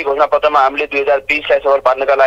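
Speech only: a man talking without pause, heard over a telephone line.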